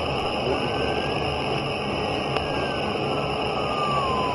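Eerie ambient background music: a steady hissing drone with a faint tone that slowly rises and then falls.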